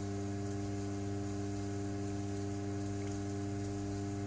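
Electric pottery wheel's motor humming steadily while the wheel head turns.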